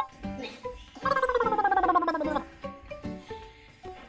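A comic sound effect: a warbling tone that slides down in pitch for about a second and a half, over light background music of short plucked notes.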